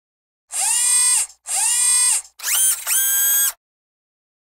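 Electronic intro sting of four synthetic tones, each starting with a quick upward swoop: two of nearly a second each, then a short one and a longer one, ending about half a second before the title card appears.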